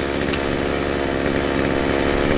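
Chainsaw engine running steadily at an even speed, not revving or cutting.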